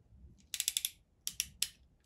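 Ratchet crimping tool clicking as its handles are squeezed to crimp a ferrule-type terminal onto a wire. A quick run of clicks comes about half a second in, then three more clicks around a second and a half.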